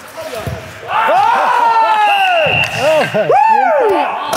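Several men shouting and calling out over one another during a hockey game, loud from about a second in, with a few low knocks of stick or puck before that.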